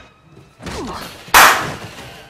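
A single loud pistol shot on a TV drama soundtrack, a sharp crack with a short fading tail, about a second and a half in. Just before it a man's voice cries out during a struggle.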